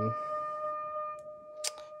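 Buchla 200 modular synthesizer oscillator holding a steady electronic drone, a single held pitch with a fainter octave above it, with a short click near the end.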